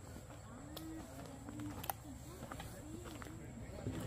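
Faint voices of people talking at a distance, with a few sharp clicks, the loudest about two seconds in.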